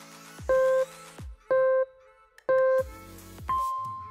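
Countdown timer beeps: three short, loud, identical beeps about a second apart, then a longer, higher beep that fades, marking the end of a rest period and the start of the next exercise. Background electronic music with a steady low beat plays underneath.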